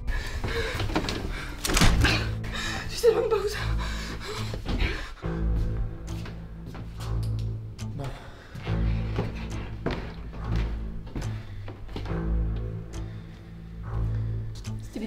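Low, slowly pulsing horror-film score, a deep drone that swells and fades every second and a half or so. In the first few seconds there are several sharp knocks and a woman's tearful voice.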